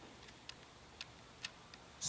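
A nearly silent room with a few faint, sharp ticks about half a second apart.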